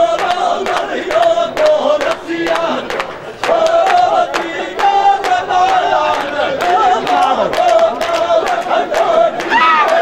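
Rajasthani dhamal: a large frame drum (chang) struck in a steady beat under loud, drawn-out men's chant-singing, with crowd voices joining in.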